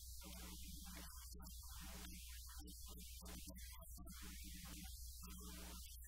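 Faint, steady low electrical hum, mains hum in the recording, with no audible speech.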